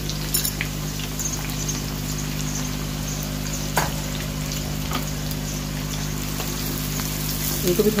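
Freshly added sliced onions frying in hot oil in a non-stick pan, sizzling steadily with a few sharp crackles. A steady low hum runs underneath.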